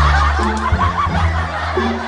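Laughter over background music whose low bass notes step from one pitch to the next.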